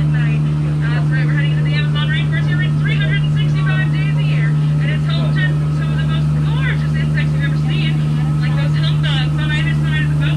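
Tour boat's motor running with a steady low drone, under a busy stream of quick high chirps.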